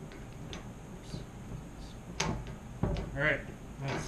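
Metal clips of a crab pot harness knocking against the wire frame of the pot as they are hooked onto its corners: a few light clicks, then two sharper knocks a little past halfway.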